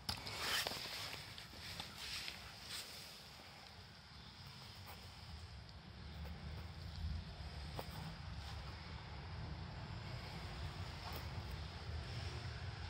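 Quiet outdoor background with a steady low rumble and a few faint clicks.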